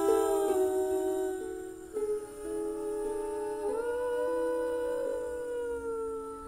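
Wordless humming in long held notes that step slowly from pitch to pitch, layered in more than one part, as part of a soft song's closing passage.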